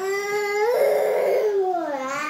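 A baby crying: one long wail that turns rough and strained in the middle and falls away near the end, with a shorter rising-and-falling cry starting right after. The fussy crying of an overtired baby fighting sleep.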